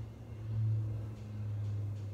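A steady low hum with no speech, unchanging in level, with a faint higher tone sounding about half a second in.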